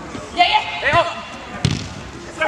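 Players' short shouts, then a single sharp thud about one and a half seconds in as the football is struck on artificial turf.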